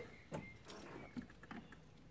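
Faint handling sounds from a person settling into a van's driver's seat: soft rustling with a few small clicks.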